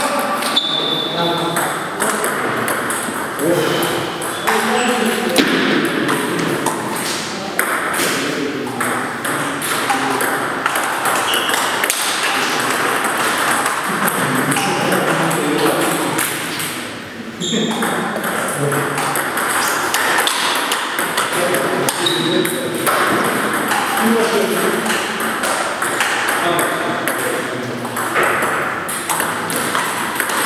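Table tennis ball clicking against paddles and the table in repeated rallies, with people talking in the background.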